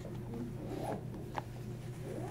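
Faint rustling over a steady low room hum, with a single sharp click about a second and a half in.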